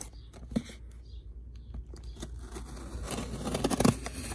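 Microtech knife blade slicing through packing tape along a cardboard box's seam: a scraping, crackling tear that builds from about halfway through and is loudest near the end, after a sharp click about half a second in.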